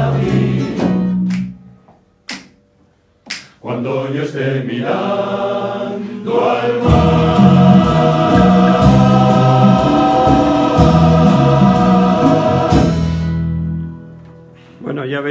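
Male choir singing in chords, backed by strummed Spanish lutes (bandurrias and laúdes) and classical guitars. The music stops about two seconds in for a short pause, comes back, and is at its loudest in the second half. It ends near the end on a held chord that fades out.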